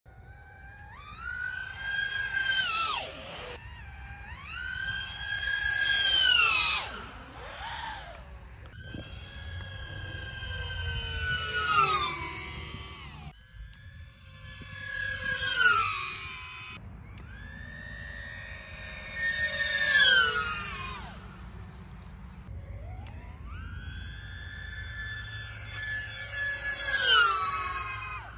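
Custom-built 5-inch 6S FPV racing quadcopter making about six high-speed fly-bys at over 90 mph. Each pass is a high-pitched motor and propeller whine that swells, holds, then drops sharply in pitch as the drone shoots past.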